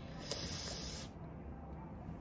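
A person's breathy hiss of air through the teeth, about a second long near the start.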